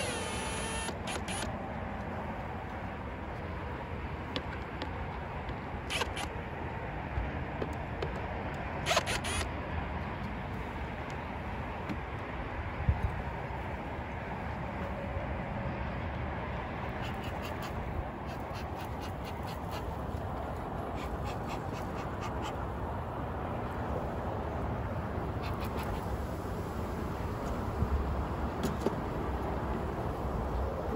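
A few short bursts of a cordless drill in the first ten seconds or so, backing screws out of a wooden nuc box lid. Scattered clicks and knocks follow over a steady background noise.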